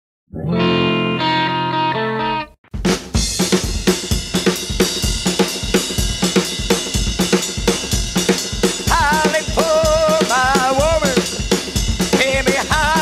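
A held chord of about two seconds. Then, after a brief break, a rhythm'n'blues-punk band comes in with a steady drum-kit beat, and from about nine seconds a wavering high line rises over it.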